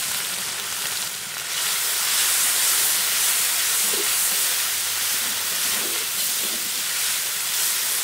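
Onion and spice paste frying in hot oil in a steel karahi, a steady sizzling hiss as it is stirred with a metal spatula.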